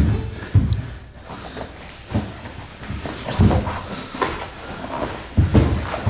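Thumps and scuffs of two people grappling on a training mat against a padded wall, with heavy bumps about half a second in, at two seconds, at three and a half seconds and near the end.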